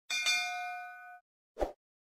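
Notification-bell sound effect: a bright bell chime, struck twice in quick succession, ringing for about a second and fading. A short, low pop follows about a second and a half in.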